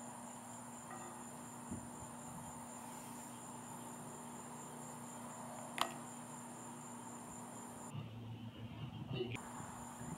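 Crickets trilling steadily at a high pitch; the trill stops for about a second and a half near the end and then resumes. A single sharp click a little before six seconds in.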